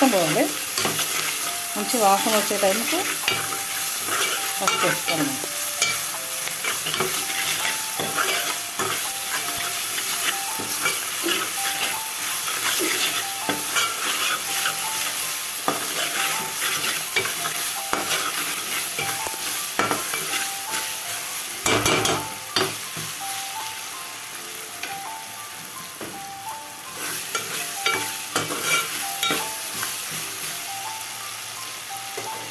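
Chopped onions and green chillies sizzling as they fry in oil in a pot, with a metal spoon stirring and scraping repeatedly across the pot's bottom. The scraping eases for a few seconds about three-quarters of the way through, then picks up again.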